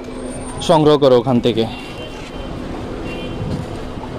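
Steady outdoor street noise of road traffic and a market crowd, with a man's voice speaking briefly about a second in.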